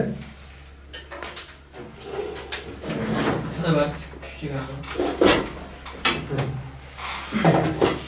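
Indistinct talking among several people, with knocks and clatter as a laptop is turned round and handled on a desk.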